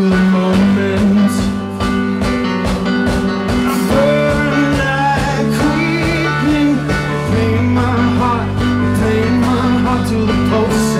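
Live band playing a rock song: a drum kit keeps a steady beat under sustained keyboard chords, and a man sings a melodic line through the middle.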